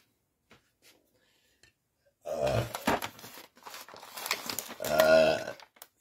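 Wrapped present being picked up and handled, its wrapping paper rustling and crinkling, starting about two seconds in. Twice over it a man makes a short wordless voiced sound.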